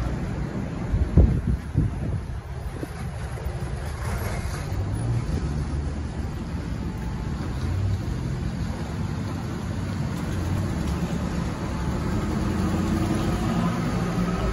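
City street background noise: a steady low rumble of road traffic, with two brief thumps about a second in.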